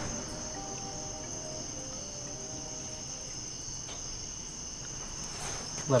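A steady, thin, high-pitched whine that does not change, over a quiet low background hum.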